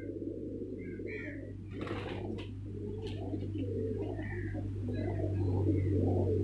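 Many domestic pigeons cooing at once, their calls overlapping continuously, over a steady low hum, with a few short high chirps.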